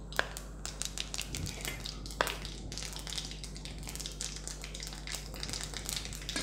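Mustard seeds, urad dal and fenugreek spluttering in hot oil in a wok: a steady scatter of small crackling pops, with two sharper pops just after the start and about two seconds in.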